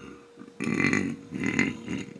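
Two rough, throaty noises made with a person's voice, the first beginning about half a second in and the second after a brief gap, over a faint steady hum.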